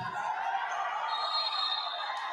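Spectators and players in a gymnasium shouting out together, a sustained outcry as a player goes down on the court.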